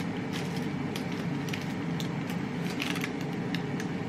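Metal spoon scraping into a soft, crumbly baked cookie on baking paper, giving a few light clicks and crackles. Under it runs the steady hum of an air fryer's fan.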